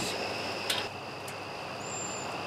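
Quiet outdoor ambience with a steady, high insect chirring and a faint click about two-thirds of a second in.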